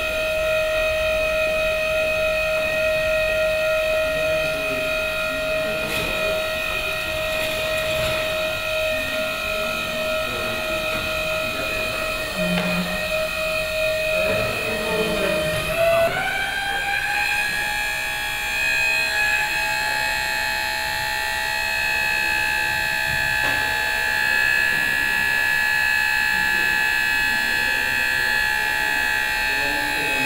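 Electric lift's motor and hydraulic pump whining steadily as it holds and raises a heavy load. The pitch glides up to a higher steady whine about halfway through.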